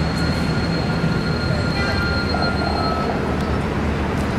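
Steady low rumble of outdoor traffic noise, with a faint thin high tone that stops about three seconds in.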